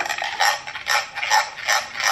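A spoon stirring espresso and thick pistachio paste in a ribbed glass, scraping against the glass in quick repeated strokes, about three a second.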